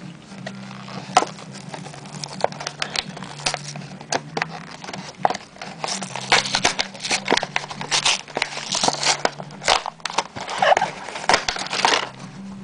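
Plastic blister packaging and its cardboard backing being pulled open by hand, crinkling and crackling in irregular bursts that get busier in the second half. A steady low hum runs underneath.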